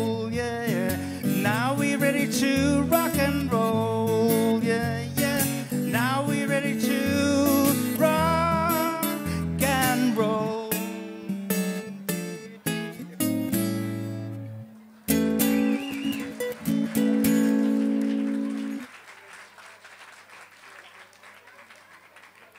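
Acoustic guitar playing the closing bars of a song, with wordless wavering sung notes over the first half. Then come separate strummed chords and a final chord that rings for a few seconds and stops. Soft applause follows near the end.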